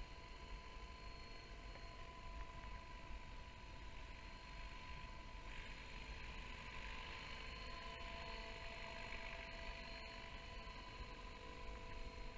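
Distant electric RC helicopter (550-size, in an Agusta scale fuselage) in flight: a faint, steady whine of motor and rotors, made of a few held tones, with a hiss that grows a little louder from about halfway as it comes nearer.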